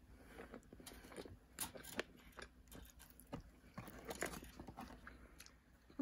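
Close-miked chewing and biting of fries covered in chocolate and marshmallow sauce: faint, scattered small clicks and crunches.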